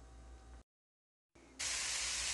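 Faint room tone that cuts to a moment of dead silence, then a steady sizzle of shredded chicken frying in a pot starts about one and a half seconds in.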